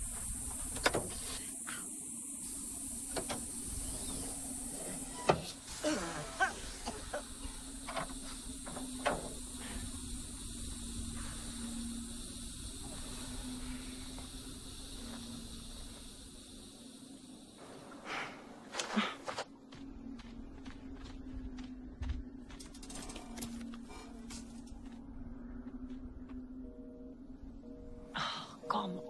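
Film soundtrack with a steady low music drone throughout. Over it, a hiss stops about five seconds in, followed by scattered footsteps on gravel and a few louder knocks about two-thirds of the way through.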